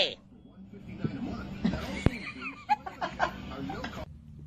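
A person laughing quietly under their breath, with a sharp tap about two seconds in.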